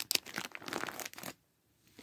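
Plastic DVD case being handled, crinkling and crackling in irregular bursts for a little over a second, then stopping.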